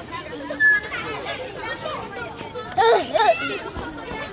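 Children's voices chattering and calling out while they play, with a loud child's shout about three seconds in.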